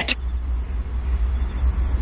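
Steady low hum with a faint hiss: the constant background tone of the recording, running on under the dialogue.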